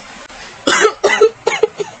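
A person coughing: a fit of about four short coughs that starts just over half a second in, the first one the loudest.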